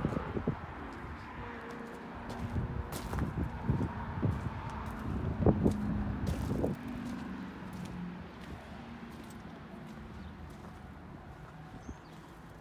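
Footsteps on gravel: a run of irregular crunches and knocks, loudest in the middle and fading away near the end.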